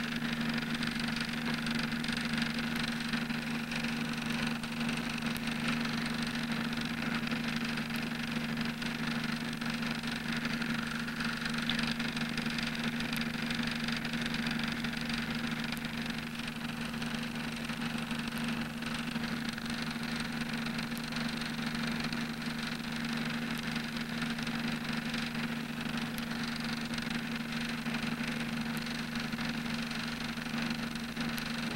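Steady low mechanical hum with an even hiss over it, unchanging throughout.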